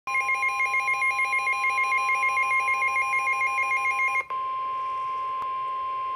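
Midland weather alert radio sounding its alarm for a NOAA Weather Radio severe thunderstorm warning: a rapidly warbling two-note alert over a steady tone for about four seconds. After a brief break, a single steady tone near 1 kHz follows, the broadcast's 1050 Hz warning alarm tone.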